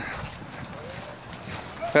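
Hoofbeats of a thoroughbred racehorse walking by on a dirt path, against steady outdoor background noise.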